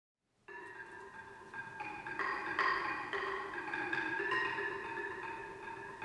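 A small tuned mallet-percussion instrument played with mallets: a slow run of struck notes that ring on and overlap, starting about half a second in and growing gradually louder.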